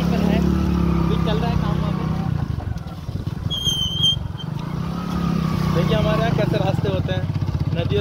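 A motor vehicle engine running with a steady low drone, under indistinct voices. A brief high whistle-like call about three and a half seconds in.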